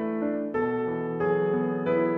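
Solo piano playing slow, soft chords, with a new chord struck about every two-thirds of a second.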